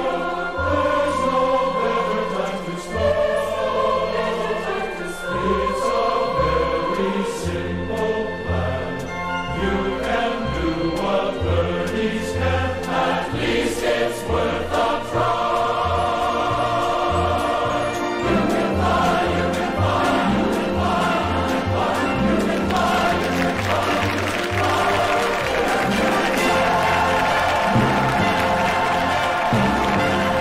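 A group of voices singing a song together with band accompaniment and a pulsing bass line.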